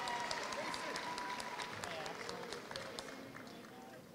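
Audience clapping and calling out, scattered sharp claps over a hall-wide murmur of voices, dying away toward the end.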